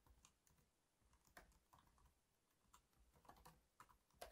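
Typing on a computer keyboard: a run of faint, irregular key clicks as a line of code is entered.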